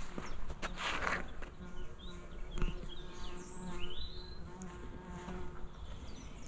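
A bee buzzing close to the microphone, a steady hum from about a second and a half in until shortly before the end.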